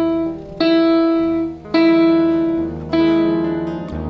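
Digital piano sounding the same note three times, about a second apart; each strike rings and fades before the next.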